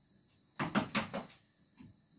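A short clatter of several quick knocks and clicks, like kitchen containers or utensils being handled, about half a second in, followed by one faint tap near the end.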